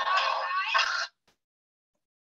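A loud, wavering alarm sound from a wolf-deterrent phone app, heard over a video call; it cuts off suddenly about a second in, leaving silence.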